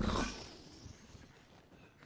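A deep, rough growl, loud at the start and fading within about half a second into a faint low rumble.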